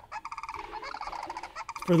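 Recorded sandhill cranes calling, played back over a room's loudspeakers: a rapid rattling call that breaks off just before the end.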